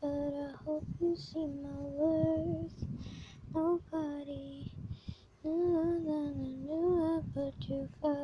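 A high voice singing a slow melody in long held, gently wavering notes, in phrases broken by short pauses.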